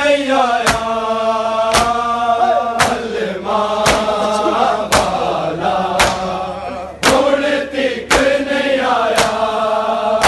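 A group of men chanting a Shia mourning noha in unison, with the collective slap of hands beating on bare chests (matam) in a steady beat about once a second.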